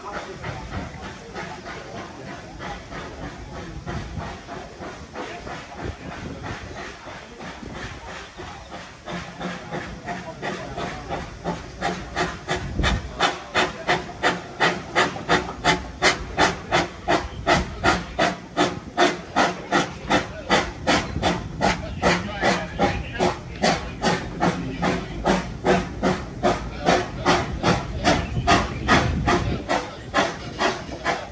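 Narrow-gauge steam locomotive hissing, then starting to chuff about ten seconds in as it gets the train moving, the exhaust beats settling into a steady rhythm of about three a second.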